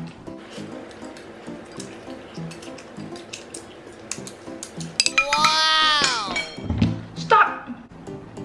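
Wooden chopsticks clinking and scraping against a bowl as the last noodles are scooped out, over quiet background music. About five seconds in comes a loud, drawn-out voice-like cry that rises and then falls in pitch, followed by a short vocal burst.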